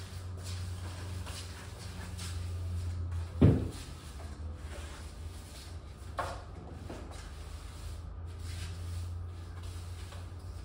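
A push broom sweeping a bare concrete floor in repeated scraping strokes, over a steady low hum. A heavy thump comes about three and a half seconds in, and a sharper knock a few seconds later.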